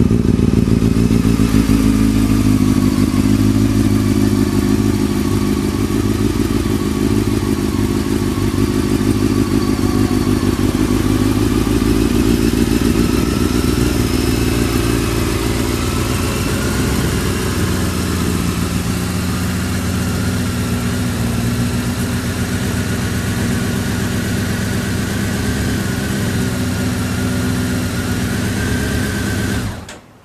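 Honda CBR600F inline-four idling steadily through an Akrapovic carbon slip-on muffler, an even, settled idle that the owner rates as good.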